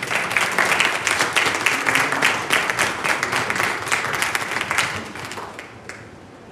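Mourners applauding, many hands clapping at once; it starts suddenly and dies away near the end.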